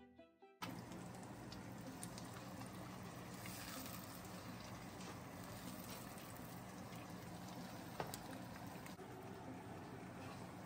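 Eggs frying in carbon steel fry pans: a faint, steady sizzle with small scattered pops, and one sharper click about eight seconds in.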